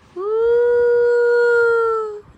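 Small brown puppy howling: one long, steady howl that rises at its start and is held for nearly two seconds.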